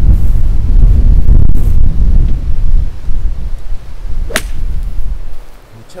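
A golf club strikes the ball off dry, dormant turf with a single sharp crack about four seconds in. Heavy wind rumble on the microphone runs before the strike and drops away just after it.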